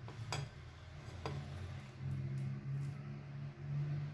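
Silicone spatula working against a glass baking dish as a slice of set peach cream dessert is cut free and lifted out, with two light knocks, about a third of a second in and just over a second in, over a steady low hum.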